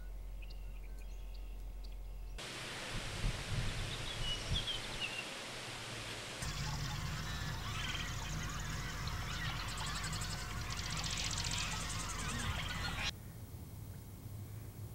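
Outdoor wetland ambience from successive field recordings: faint bird chirps at first, then a louder outdoor hiss with chirps and a few low thumps from about two and a half seconds in. From about six seconds in come more scattered bird calls and a fast trill, and the sound drops back sharply near the end.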